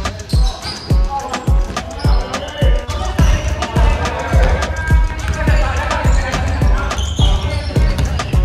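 Background music with a steady beat, about two low thumps a second.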